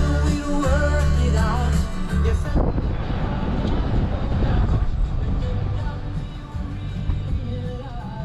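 Rock music with a singing voice playing on the car radio, heard inside the car. About two and a half seconds in, the top end drops away and the music turns duller and a little quieter.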